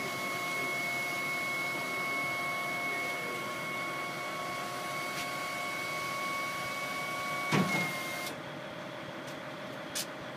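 Hydraulic pump of a truck-mounted folding platform whining steadily as the chequer-plate deck is raised upright. A clunk comes about seven and a half seconds in, and the whine cuts off just after.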